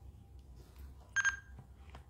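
A short electronic beep, a single high tone in two quick pulses a little over a second in, over a faint low hum.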